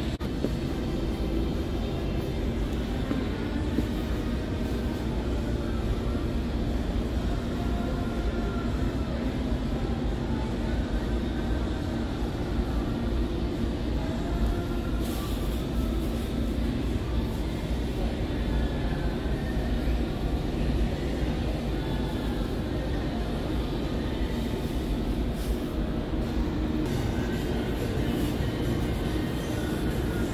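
Steady low rumbling noise of a supermarket interior, with faint music underneath.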